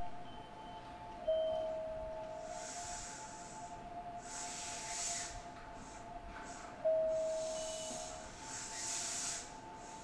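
Hanshin 5500 series electric train standing at the platform: bursts of air hissing come and go over a steady high electric hum. Two single ringing tones sound, one about a second in and one near seven seconds, each fading over about a second.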